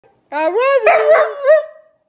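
A Boykin Spaniel–Australian Shepherd mix dog giving one drawn-out, howl-like call that rises in pitch and then wavers, its syllables sounding like 'I love you'.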